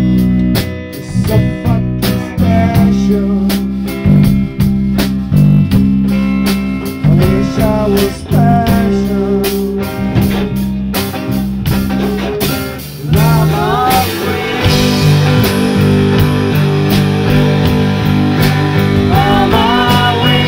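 Live band playing bluesy rock: drum kit, electric guitars and singing voices, with the singing coming in about two-thirds of the way through.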